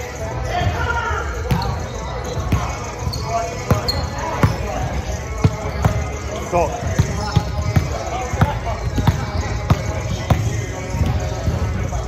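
Volleyballs being hit and landing on a hardwood gym floor: many sharp, irregular smacks, one or two a second, in a large hall, with players' voices.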